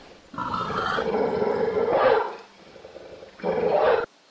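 An animal calling twice: one call about two seconds long, then a shorter one near the end that cuts off suddenly.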